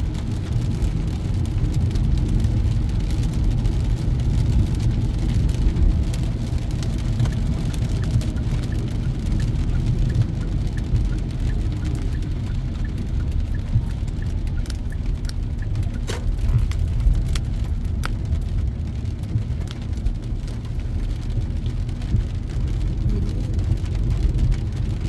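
Steady low road and engine rumble heard from inside a moving car on a wet road, with rain ticking on the windshield in scattered small clicks, one sharper tick about two-thirds of the way in.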